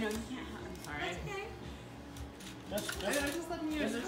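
Indistinct conversation of several people in the background.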